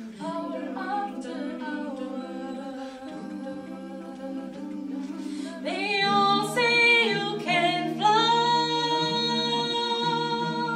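Mixed a cappella vocal ensemble of two women and three men singing sustained close-harmony chords without accompaniment. About six seconds in the sound swells louder as higher voices rise and join in.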